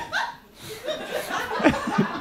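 Audience laughing in a hall, swelling after a brief lull about half a second in, with a few voices mixed in.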